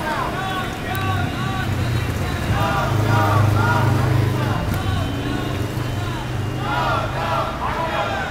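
A motor vehicle passing in the street: a low engine drone that builds about two seconds in, is loudest in the middle and fades near the end, under people talking.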